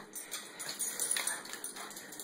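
A Boston terrier mix giving short, excited whining cries that fall in pitch, with quick clicks of its claws on a tile floor as it runs.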